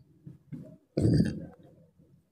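A short throaty vocal noise from the man, about a second in, lasting under half a second.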